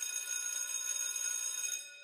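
A bell-like ringing sound effect made of several steady high tones, held for about two seconds and fading out near the end.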